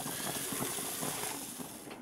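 Bratwurst sizzling on a hot gas barbecue grill: a steady hiss with fine crackling that eases a little near the end.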